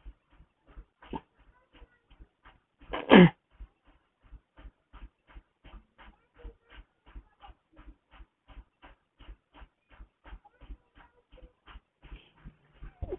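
An animal panting in a steady rhythm of about three breaths a second, with one louder whine that falls in pitch about three seconds in.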